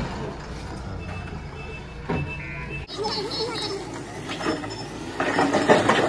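Idling vehicle engine, a steady low hum heard from inside a stopped car, with street noise; the hum drops away about three seconds in, and people's voices come up near the end.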